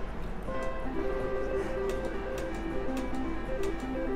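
Nine-line Double Gold reel slot machine spinning: a run of short electronic tones stepping up and down in pitch, with a few light clicks as the reels stop.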